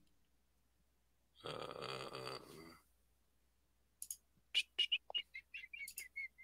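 A few sharp clicks, typical of a computer mouse, and then a run of short, high chirping notes, several a second.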